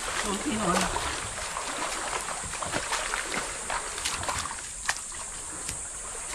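Shallow surf splashing and sloshing as a fishing net is dragged through the water toward the beach, with scattered small clicks and one sharp click about five seconds in.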